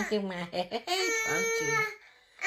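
A baby whining and fussing, with one high, drawn-out whine lasting nearly a second in the second half.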